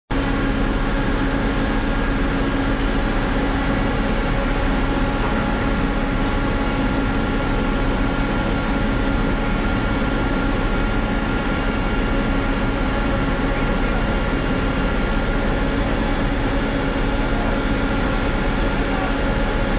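Steady engine drone with a few constant hums, running evenly without change in speed.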